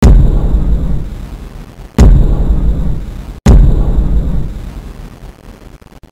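Three loud, deep cinematic boom hits: one at the start, one about two seconds in and one about three and a half seconds in. Each fades away slowly, with a long bass tail.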